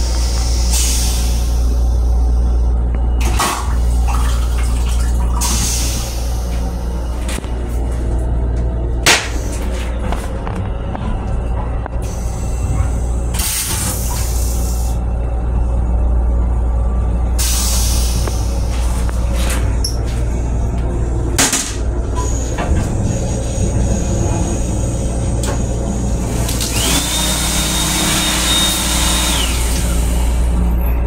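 Steady low rumble and hum of a Metro-North M7 electric railcar, heard from inside its small restroom. Short hisses break in every few seconds, and a longer hiss with a steady high whine comes near the end.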